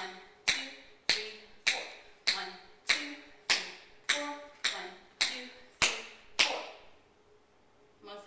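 Tap shoes striking a wooden floor in a steady beat, about one tap every 0.6 seconds, stopping about six and a half seconds in. These are the bare weight shifts on the quarter notes, the bones of a single time step.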